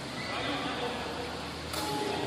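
Echoing sports-hall ambience with faint distant voices, then near the end the single sharp smack of a sepak takraw ball being kicked on the serve.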